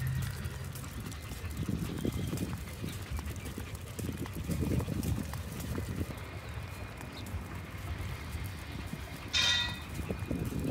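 Walking on paving stones: footsteps and the light tapping of small dogs' paws, with irregular low thumps. A short high-pitched call comes near the end.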